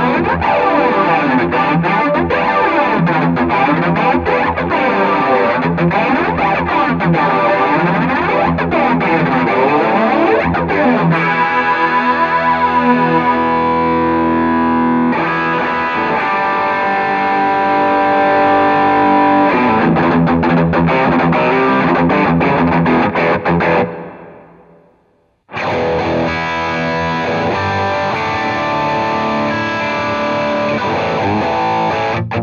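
Electric guitar played with heavy distortion through a Zoom G5n multi-effects processor on a Bogner-style amp model: fast picked lines, then held chords. The sound fades out at about 24 seconds and, after a second and a half of silence, the guitar comes back through a Boss ME-80.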